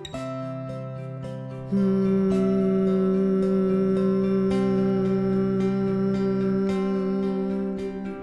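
Acoustic guitar music, joined about two seconds in by a steady hummed 'mmm' held for about six seconds: the bee-like humming exhalation of Bhramari pranayama.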